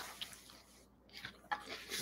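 Faint, irregular key clicks from typing on a laptop keyboard, a few taps bunched near the end.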